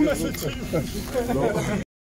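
Men's voices talking over one another, with a hissing sound near the start. The sound cuts out suddenly just before the end.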